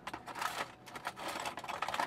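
Metal hobby tools clinking and rattling in a tool tray as a hand rummages through them to pick out a pair of tweezers, a quick run of light clicks.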